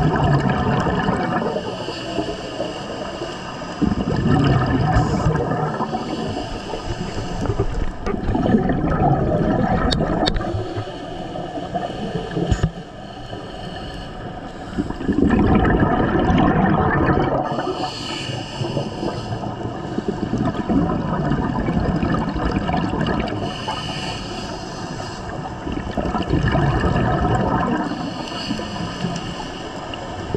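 Scuba diver's regulator breathing heard underwater: rumbling, gurgling rushes of exhaled bubbles that swell and fade every four to six seconds, with a short hiss between some of them.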